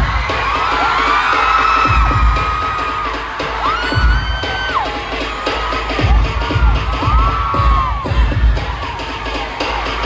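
Loud pop dance track played over a concert PA with a heavy, regular bass beat, while audience members scream over it in several long, high-pitched screams that rise, hold and fall.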